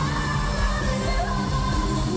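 K-pop girl group singing a pop song live in an arena over a band with drums, keyboards and guitar, with a steady heavy bass, picked up from far back in the stands.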